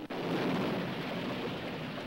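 Rumbling roar of a large explosion on an old film soundtrack: an even rush of noise that starts abruptly and holds steady, with no single sharp blast.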